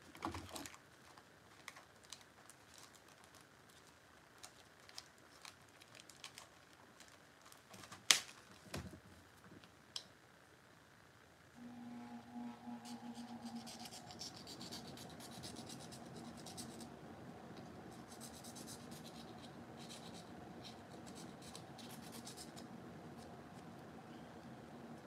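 Small clicks and taps of model parts being handled, with one sharper knock about eight seconds in; then, from about halfway, a sustained scraping as a small model part is filed by hand, over a steady low hum.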